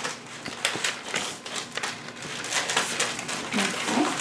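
Sterile glove packaging being opened and unwrapped by hand: irregular crinkling and crackling of the plastic and paper wrapper, with many small clicks.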